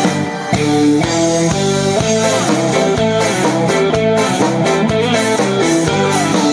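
Live band music with no singing: a guitar-like plucked melody moving note to note over a steady beat of about two strokes a second.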